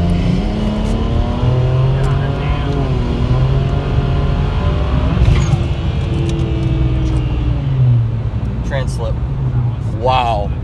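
A BMW 335i's twin-turbo N54 inline-six, on upgraded 19T turbos, revving hard under full throttle, heard from inside the cabin. The engine note climbs, sags, then climbs again as the revs flare: the ZF automatic transmission is slipping under about 32 psi of boost, most of all around the shift into fourth.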